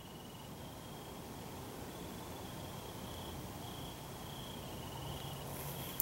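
Faint crickets chirping in short, repeated high-pitched pulses over a steady background hiss.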